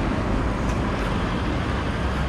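Steady city-street traffic noise, an even rumble with no single vehicle standing out.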